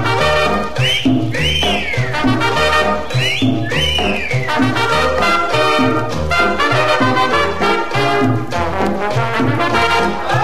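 Instrumental opening of a guaracha played by a Latin dance orchestra: a brass section over a steady bass and percussion beat. The brass plays sliding notes that bend up and down in pitch twice in the first few seconds.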